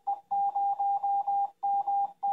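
Morse code tone keyed by an Arduino-based K3NG CW keyer, sending the call sign AE0MT: a single steady beep switched into short and long elements. A lone dit, then a run of five dahs for the zero, then two dahs for M near the end.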